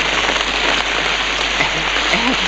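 Steady rain falling hard, an even hiss with no breaks.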